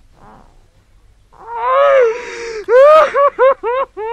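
A woman weeping aloud: faint breathing, then a breathy, gasping sob that rises into a long high cry, followed by a run of short wailing cries, each falling in pitch.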